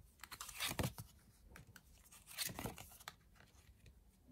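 Tarot cards being drawn and laid onto a table: faint rustling and soft clicks of card stock, in two bursts, just before a second in and again past halfway.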